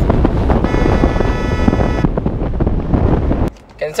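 Wind buffeting the microphone and road noise from a vehicle moving at highway speed, loud and rough, with a brief steady high whine for about a second near the start; the noise cuts off abruptly shortly before the end.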